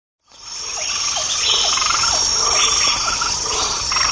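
Recorded nature soundscape laid under a picture page: a steady, high-pitched insect-like chirring with short falling calls repeating about twice a second. It fades in just after the start.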